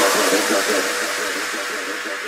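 Drum and bass track with its drums and bass cut out, leaving a wash of electronic noise and a faint held tone that fade steadily down.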